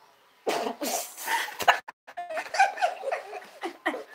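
A woman laughing hard in rough, breathy, coughing bursts, in two fits with a short break between them.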